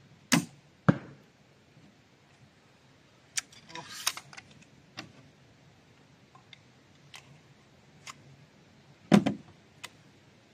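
Crossbow shot: a sharp crack about a third of a second in, with a second loud crack about half a second later. A few seconds of rattling clicks follow as the crossbow is recocked, then a heavy knock and a click near the end.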